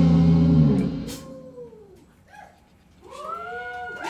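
A live rock band stops playing under a second in. Electric guitar notes then glide down in pitch and fade almost to nothing, and a second later glide back up.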